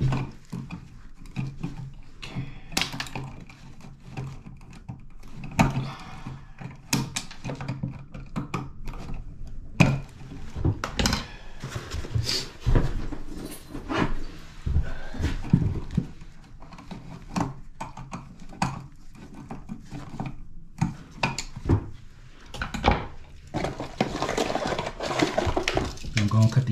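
Irregular clicks, snips and knocks of hand tools: wire cutters snipping the house wiring short in the outlet boxes, and tools and parts clattering as they are handled and set down, with rustling handling noise thickening near the end.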